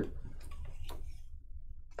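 Trading cards handled and slid against each other in the fingers: a few faint clicks and ticks over a low steady hum.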